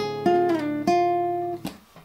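Nylon-string classical guitar played fingerstyle: a few plucked notes that ring on, then are stopped short about one and a half seconds in.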